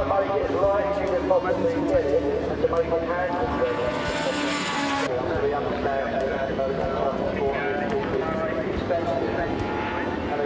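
Indistinct voices mixed with racing motorcycle engines out on the circuit, their pitch rising and falling.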